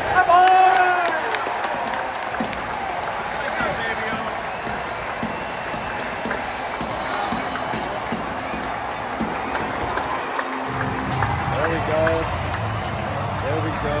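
Baseball stadium crowd cheering the final out of a home win, with victory music over the ballpark speakers and nearby fans shouting.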